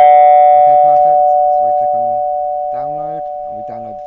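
Recorded classic two-tone ding-dong doorbell chime played back, its two tones ringing on and fading slowly.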